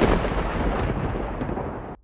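Thunder-like rumbling sound effect of a TV news programme's closing title sting, slowly fading and then cutting off abruptly right at the end.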